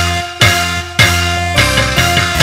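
Loud live ensemble music accompanying a sandiwara dance: sustained pitched instruments over sharp drum strokes, with the strongest hits a little after the start and about a second in.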